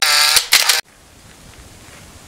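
A bright sound effect from an animated film-countdown intro: two short bursts with gliding tones in the first second, cut off abruptly. After the cut only faint outdoor background remains.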